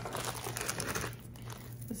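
Thin plastic bag crinkling as it is handled and opened to pull out a necklace, a dense crackle that thins out after about a second and a half.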